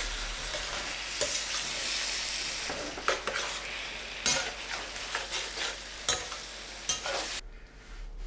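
Chicken pieces sizzling over high heat in a wide steel pan, being cooked dry. A slotted spatula stirs them, with several scrapes and knocks against the pan. The sizzle cuts off suddenly near the end.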